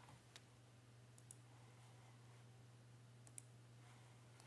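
Near silence: a low steady hum, with three or four faint clicks from the computer being operated as the slide show is started.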